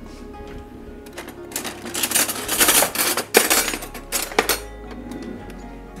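Metal silverware clattering and clinking in a kitchen cutlery drawer as a hand rummages through it for a spoon, a rapid run of rattles starting about a second in and dying away after about four seconds.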